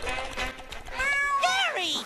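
A cartoon snail meowing like a cat: a couple of drawn-out meows, arching up and falling in pitch, in the second half.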